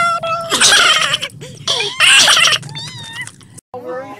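A Siamese-type cat yowling and meowing in a run of wavering calls. Two of them are loud and harsh, about half a second and two seconds in. The sound stops abruptly shortly before the end.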